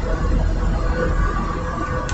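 Steady rumble and hiss heard from inside a van: road traffic going by outside, with rain starting to fall.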